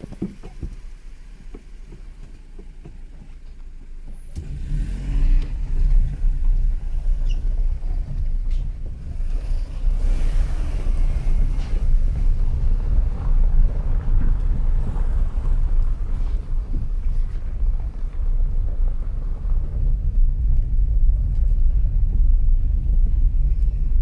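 Car driving, heard from inside the cabin: a low, steady rumble of engine and road noise that gets much louder about four seconds in and holds.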